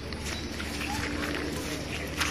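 Footsteps through dry grass and brush as people walk, with a steady low rumble underneath.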